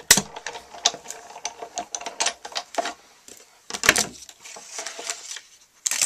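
Sizzix Big Shot die-cutting machine being hand-cranked, its platform and cutting plates passing between the rollers to cut a circle die through cardstock: a run of irregular clicks, with louder knocks near the start and about four seconds in.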